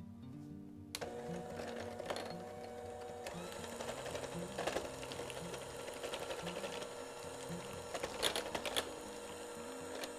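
Electric 5-speed hand mixer starting about a second in and running steadily, its beaters whisking a melted butter, sugar and pumpkin-spice mixture in a glass bowl. A few sharp clicks come near the end.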